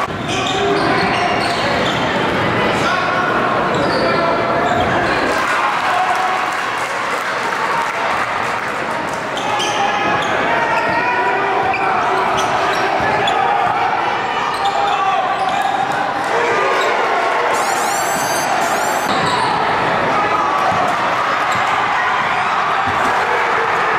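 Live gym sound of a basketball game: a basketball dribbling on a hardwood court over steady crowd chatter and shouting in a large hall, with a short run of high sneaker squeaks late on.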